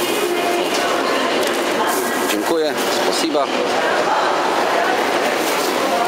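Steady hubbub of voices in a large indoor market hall, with a nearby voice speaking briefly twice around the middle.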